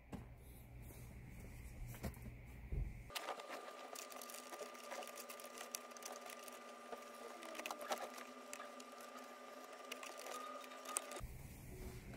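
Faint handling sounds of a new foam cupholder liner being worked and pressed down into a plastic console cupholder: light rubbing with small scattered clicks.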